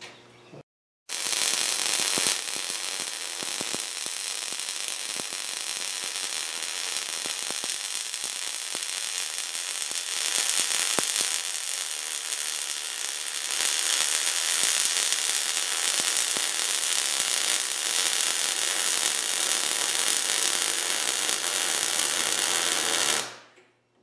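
MIG welding arc on butted steel plate, a steady crackle with many fine snaps, the welder set at 19 volts and 200 inches per minute wire feed. The arc strikes about a second in and stops near the end.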